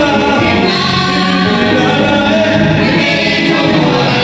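Mixed group of women's and men's voices singing a gospel song together in harmony into microphones, amplified through a PA system.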